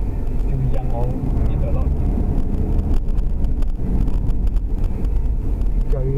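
Steady road and engine noise inside a moving taxi's cabin at expressway speed, with faint voices about a second in.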